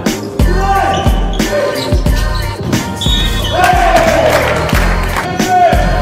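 Background music with a heavy, booming bass beat, falling synth tones and vocals.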